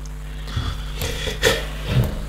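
A few light clicks and taps of small plastic Lego pieces being picked up and handled on a tabletop, over a steady low hum.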